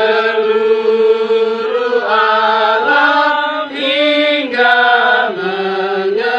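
Slow singing in long, drawn-out held notes that slide from one pitch to the next, over a steady lower note held throughout.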